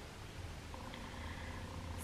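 Quiet room tone: a faint, steady low hum in a pause between speech.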